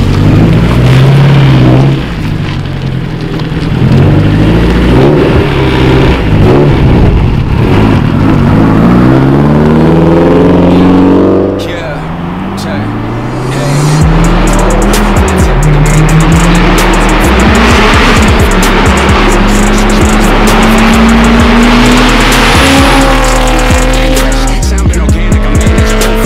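Honda S2000's four-cylinder engine revving up and down over and over as the car is driven in tight turns. After a short dip about twelve seconds in, a car engine pulls with a long, slowly rising note.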